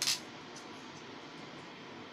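Clear adhesive tape being pulled and torn off a small roll: one short, sharp rasp right at the start, then only a steady faint hiss.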